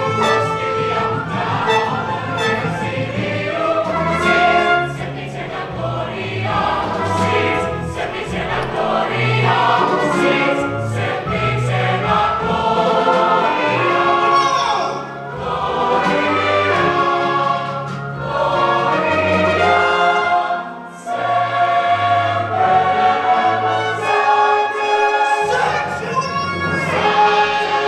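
Stage-musical ensemble choir singing with instrumental accompaniment, a stepping bass line moving beneath the voices. The music dips briefly in loudness about three-quarters of the way through.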